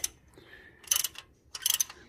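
Socket ratchet clicking in two short bursts, about a second in and near the end, while tightening an exhaust manifold bolt.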